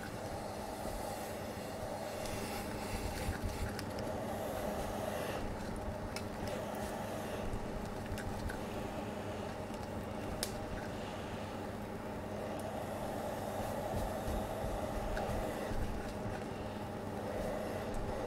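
Household steam iron pressed and slid over a crochet lace motif on a padded surface: a steady low hum and soft rubbing, with a few light clicks.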